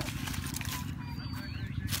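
Wire fish traps being handled and shaken, giving scattered knocks and rattles over a steady low rumble, with a brief thin high whistle about a second in.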